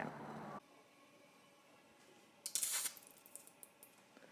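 About two and a half seconds in, a brief hiss as drops of water from a dropper land on a very hot steel frying pan and flash into steam, followed by a few faint crackles.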